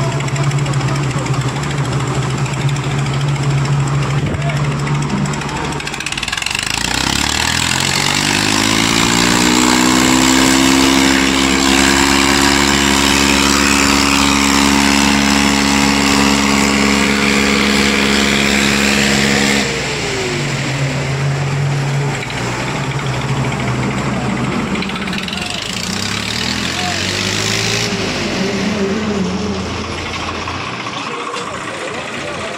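Tractor diesel engines in a tug-of-war pull, the nearest being a Swaraj 855 FE's three-cylinder diesel. It runs steadily at first, then revs up under load a few seconds in and holds high for about twelve seconds before dropping back. It climbs briefly again near the end.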